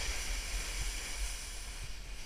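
Snowboard sliding and carving over snow, a steady hiss, with wind rumbling on the helmet-mounted GoPro's microphone.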